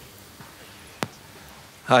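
Low hall room tone with a single sharp click about a second in, then a man's voice begins near the end.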